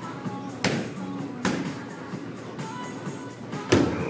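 Boxing gloves striking a handheld padded strike shield: two sharp smacks a little under a second apart in the first half, then a harder one near the end. Music plays in the background.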